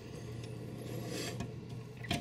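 Quiet handling noise: fingers faintly rubbing and shifting a small plastic action figure, over a low steady hum.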